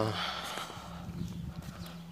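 A man's brief voiced sound that breaks off right at the start, then breathy hissing, over a steady low hum.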